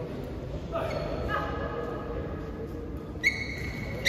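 Court shoes squeaking on the hall floor as the badminton players shift their feet: a few short squeaks about a second in, then a sharper, louder one just after three seconds.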